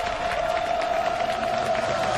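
Studio audience clapping and cheering, dense and continuous, with one long steady tone held underneath.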